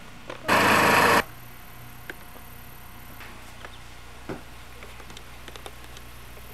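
A loud burst of static hiss lasting well under a second, starting about half a second in and cutting off suddenly, then a low steady hum with a few faint clicks.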